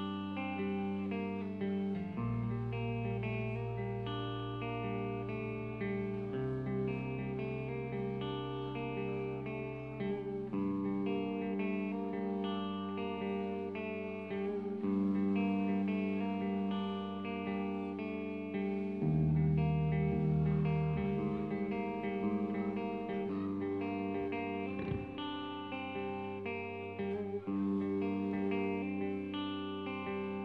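A rock band playing live: electric guitars and bass in an instrumental passage of long held notes, with the bass note changing every few seconds.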